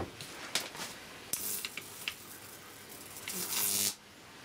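High-voltage neon sign transformer switched on at about 10 kV, humming, with the voltage discharging over a mains-tester safety screwdriver: a sizzling hiss of corona and arcing comes in two bursts, one about a second in and a louder one near the end. The sound is the screwdriver's insulation breaking down under the high voltage.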